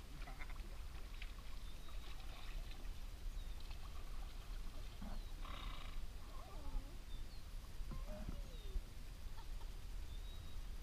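Kayak paddles dipping and splashing with water lapping around the boats, over a steady low rumble on the microphone. A few faint, wavering calls come near the end, too faint to name.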